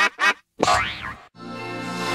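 Edited, distorted cartoon-logo sound effects: two short boing-like sounds, then a longer one swooping in pitch. After a brief gap, a sustained electronic chord starts at about one and a third seconds.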